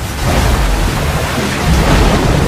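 Floodwater rushing and splashing in a torrent: a loud, steady rush with a deep rumble underneath.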